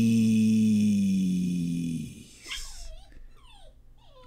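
A man's voice holds one long drawn-out note for about the first two seconds, sinking slowly in pitch. A pet dog then whines briefly in short sliding cries.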